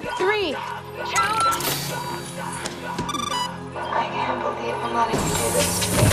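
Tense electronic drama score with a steady low drone, overlaid with computer sound effects: gliding chirps near the start, a short tone about a second in and a quick run of beeps about three seconds in. The music swells louder about five seconds in.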